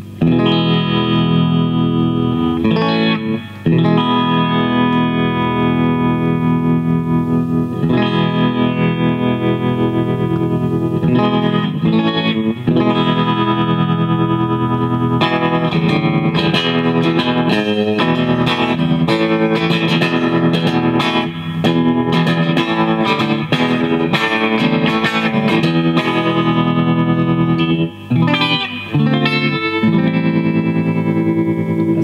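Electric guitar, a Fender Telecaster, played through a Boss TR-2 Tremolo pedal into a Fender Bass Breaker 007 amp. Chords and picked notes pulse rapidly in volume, with the pedal's wave control turned fully to sawtooth.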